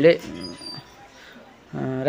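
A man's narrating voice trails off, pauses for about a second, and starts speaking again near the end.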